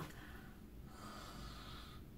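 A woman's faint breath through a wide-open mouth, over quiet room tone.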